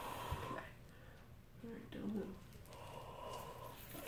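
A man breathing out slowly and steadily while a nipple piercing needle is pushed through, a controlled exhale to get through the pain, with a short voiced murmur about two seconds in and a second long exhale near the end.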